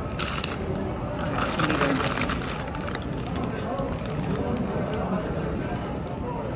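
A paper burger wrapper crinkling as it is handled and folded back for a bite, in two crackly spells in the first couple of seconds, over the steady chatter of a crowd.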